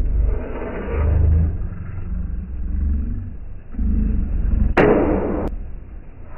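Low, uneven rumble of roadside traffic, with a harsh half-second burst of noise about five seconds in.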